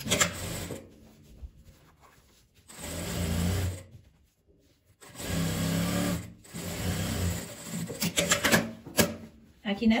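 Straight-stitch sewing machine running in two bursts, about a second and then about two and a half seconds, stitching the lining to the main fabric. Short clicks and fabric rustling follow as the fabric is handled.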